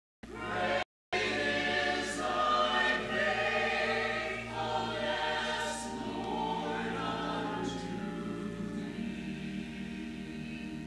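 Mixed church choir of men and women singing an anthem in parts. The sound cuts out completely twice within about the first second.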